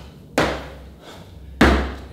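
Feet landing on foam floor mats during explosive jump squats: two thuds a little over a second apart, the second the louder.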